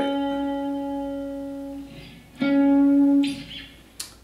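Clean electric guitar chord, a G diminished triad (G, B flat, D flat), ringing and slowly fading, then struck again about two and a half seconds in and let ring before it is cut short a little after three seconds.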